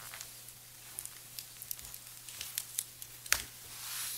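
Quiet room tone with a steady low hum, light rustling of paper handouts and scattered small clicks, and one sharper knock about three seconds in.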